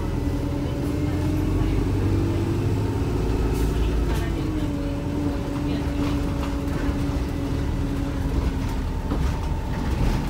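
Volvo B5LH hybrid double-decker bus heard from inside the lower deck while driving: a deep drivetrain rumble with a steady whine that rises a little and falls back a few seconds in.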